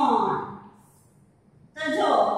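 A woman's voice: a drawn-out, sigh-like utterance falling in pitch at the start, a quiet gap, then another short voiced sound near the end.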